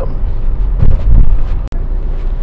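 Road and engine noise inside a moving car's cabin: a steady low rumble that swells briefly about a second in, with the sound cutting out for an instant near the end.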